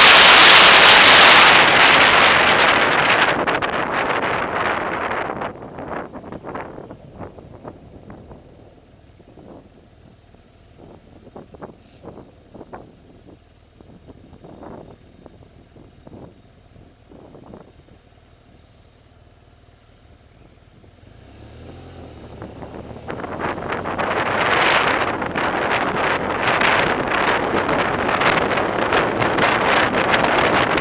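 Wind buffeting the microphone of a camera on a moving open vehicle. It is loud at first, then dies away as the vehicle slows in traffic, leaving a quiet stretch with faint scattered traffic noises. It builds back up over the last several seconds as the vehicle speeds up again.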